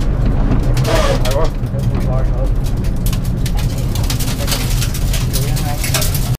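Rally car engine running at low, steady revs, heard from inside the stripped, caged cabin. Ticks and rattles grow more frequent from about halfway through.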